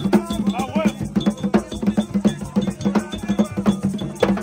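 Haitian Vodou drumming: drums beaten with sticks and hands under a metal bell struck in a steady, repeating pattern, with voices singing along.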